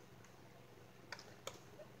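Near silence with a few faint clicks, about a second in and near the end, from a hand working the switch on a toy fire truck to turn on its lights.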